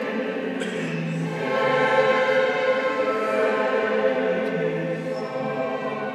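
Sacred choral music: a choir singing slow, sustained chords with orchestral string accompaniment.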